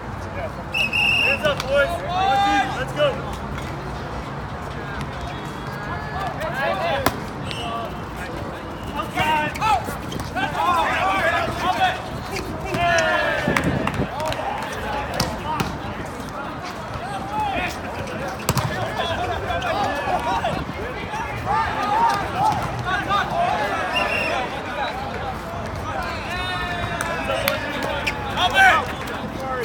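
Players and onlookers shouting short calls over each other through a volleyball rally, with a few sharp slaps of hands striking the ball.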